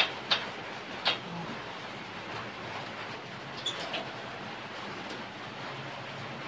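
Three short clicks within the first second, then a steady low hiss of background noise.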